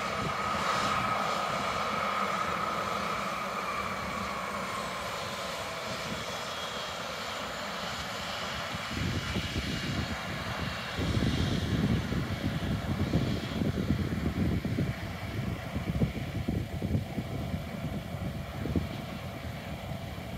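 Jet aircraft engines: a steady whine that sinks slightly in pitch over the first few seconds, giving way from about halfway through to a louder, uneven low rumble.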